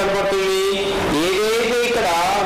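A voice talking in drawn-out, sing-song tones: one pitch held steady for about a second, then sliding up and wavering.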